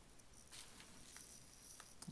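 Quiet room with a few faint, light clicks and rustles as a padded mailer is handled on a desk.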